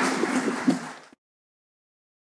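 Audience applauding, cut off suddenly just over a second in.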